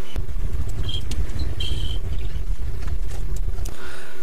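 A steady low rumble with a few faint clicks, and two short high tones about one and two seconds in.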